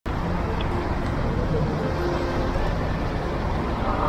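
Road traffic passing on a city street: a steady low noise with faint voices in the background.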